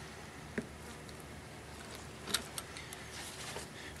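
A few faint clicks and taps of a metal HVLP spray gun being handled and turned over, one about half a second in and a small cluster a little past two seconds, over a low steady background hiss.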